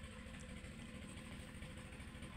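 Faint, steady low rumble of background noise.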